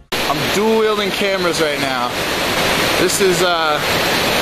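Waterfall rushing below as a loud, steady hiss, with a man's voice talking over it in two stretches.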